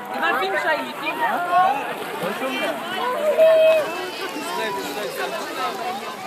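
Overlapping voices of children and adults chattering and calling out, with no clear words and one drawn-out call midway.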